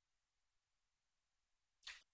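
Near silence: the dead air between speakers on a remote link, with one brief soft burst of sound just before the end.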